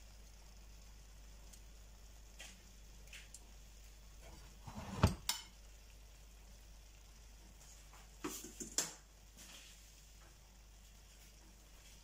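Metal tongs lightly tapping and clinking against a ceramic plate and a frying pan while prawns are lifted out and served: a few scattered taps, the loudest about five seconds in and a short cluster just after eight seconds, over a faint steady hum.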